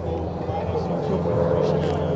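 Two Pratt & Whitney R-985 Wasp Junior radial engines of a Beech C-45 Expeditor droning steadily as it banks toward the listener, the sound growing slightly louder through the fly-past.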